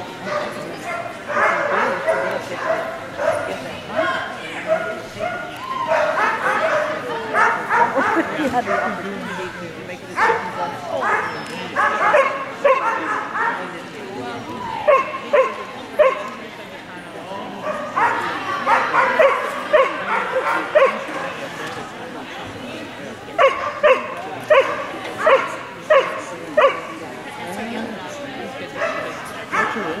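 Dog barking in repeated runs of quick, high yipping barks, a few a second, coming again and again.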